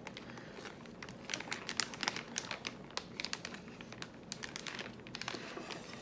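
Crinkly snack pouch of peanut butter cups being pulled and crumpled by hands trying to get it open, a rapid, uneven run of sharp crackles. The bag is resisting: its cut was not made low enough to open it.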